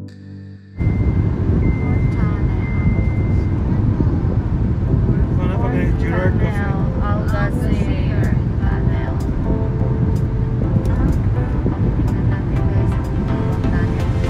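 Loud, steady low road and engine rumble inside a moving car's cabin, starting suddenly about a second in. A high steady tone sounds over it for the first couple of seconds, and a voice and music are heard over the rumble further on.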